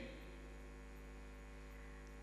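Steady low electrical mains hum from the sound system, with no other sound over it.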